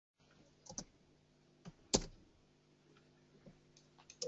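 A handful of faint, sharp clicks at irregular spacing, a close pair near the start and the loudest about two seconds in.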